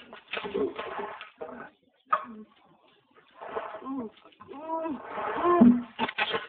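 A person's voice making short bursts of wordless vocal sounds with pauses between them, ending in a low held "ooh".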